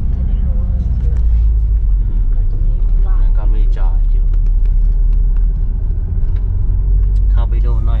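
Steady low engine and road rumble heard inside the cab of a Ford Grand Tourneo Connect van driving slowly along a narrow road.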